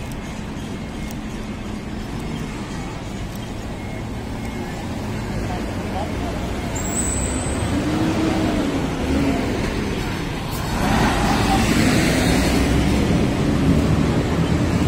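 Street traffic with cars driving past close by, a steady rumble that swells about eight seconds in and grows louder again near eleven seconds as a vehicle goes by.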